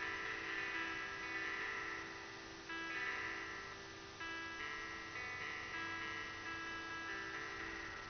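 Pocket Guitar app on an iPod Touch playing simulated guitar through a speaker dock: single notes and chords struck every one to two seconds, each left to ring and fade slowly before the next.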